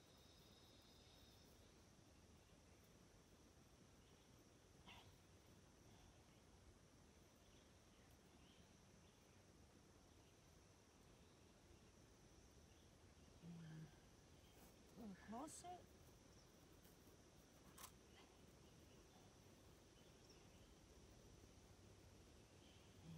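Near silence: quiet woodland background with a faint steady high insect-like hum and a few faint clicks and rustles from hands working a snare at a tree's base.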